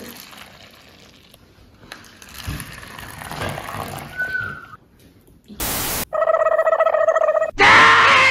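An edited-in sound effect: a sudden short burst of noise, then a steady held tone for about a second and a half. Near the end a man's loud voice from an inserted film clip comes in.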